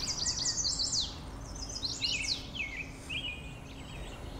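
Songbirds singing: a rapid run of high, thin notes in the first second, then another high phrase about two seconds in that drops in pitch at its end, with fainter calls between.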